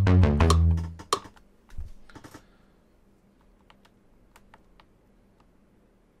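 Teenage Engineering OP-Z synth pattern playing, with bass notes and sharp percussive hits, that stops about a second in. After it, a soft thump and a few faint clicks of buttons and keys being pressed.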